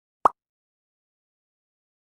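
A single short pop from a logo-animation sound effect, about a quarter of a second in.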